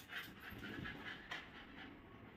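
Beagle puppy panting faintly and quickly, with a single click a little past halfway.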